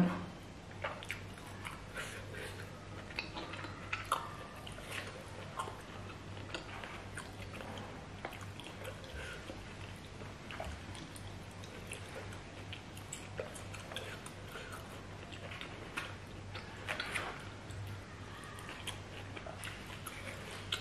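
A person chewing pieces of roast pork in pork-blood sauce, with scattered small mouth clicks and smacks. A few are louder, about four seconds in and again near the end.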